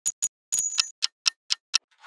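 Clock-like ticking sound effect: two quick ticks, a short cluster of clicks with a thin high tone, then four evenly spaced ticks at about four a second.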